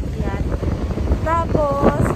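Strong sea wind buffeting the microphone, a steady low rumble, with a person's voice heard briefly in the second half.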